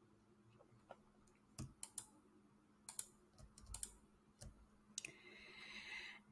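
Faint, scattered clicks of a computer mouse over near silence, several coming in quick pairs.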